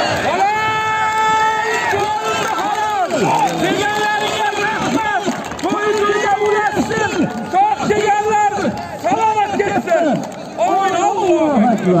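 A man's loud voice calling out in long drawn-out, chant-like phrases, each syllable held for about a second before gliding off, over a faint crowd murmur.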